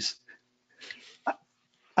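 A pause holding only faint, brief sounds: a soft breathy noise about a second in and a short rising squeak just after, of the kind a dog's whimper or a stifled chuckle makes.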